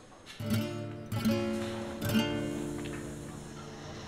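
Background music: an acoustic guitar strums three chords about a second apart, each left to ring and fade.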